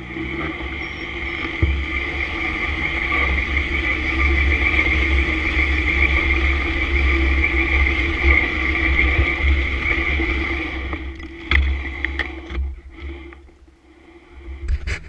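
Sport motorcycle riding at steady speed, heard on a camera mounted on the bike: engine drone with heavy wind rumble on the microphone. It builds over the first few seconds and eases off after about eleven seconds, followed by a couple of sharp knocks.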